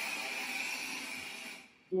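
Oxygen rushing through a Venturi valve into CPAP helmet tubing: a steady, quite noisy hiss that fades out near the end as the wall oxygen flowmeter is shut.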